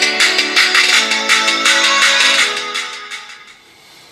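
Music played through the OnePlus 7T's stereo loudspeakers at high volume, very powerful and clear. It fades away over the last second or so.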